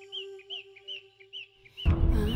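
A bird chirping in short, evenly repeated calls, about two or three a second, over a steady held music drone. Just before the end a sudden loud, low swell cuts in and covers it.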